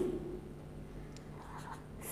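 A pen scratching faintly on paper as figures are written by hand.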